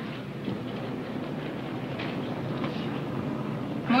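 Steady rumble of airliner cabin noise, as the plane rides through turbulence.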